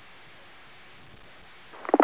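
Faint, steady hiss of an airband radio channel (119.3 MHz tower frequency) between transmissions, with a radio voice transmission beginning near the end.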